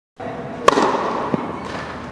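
A tennis ball struck hard by a racket: one sharp, loud crack, followed about half a second later by a duller, softer knock, likely the ball bouncing on the court.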